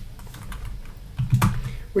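Typing on a computer keyboard: scattered light key clicks.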